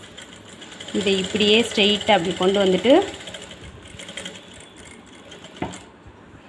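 Electric sewing machine running, stitching through folded silk saree fabric.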